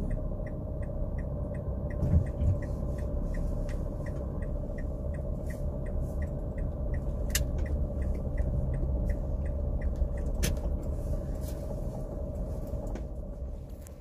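Inside a car moving slowly at low engine speed: a steady low engine and road rumble, with the turn-signal indicator ticking evenly at about two or three ticks a second until near the end.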